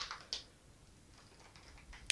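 Two faint crinkles of a clear plastic bag being handled, about a third of a second apart near the start, then near silence.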